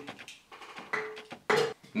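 A few faint light taps and clicks from a Pringles can being handled, with two brief voice sounds in between.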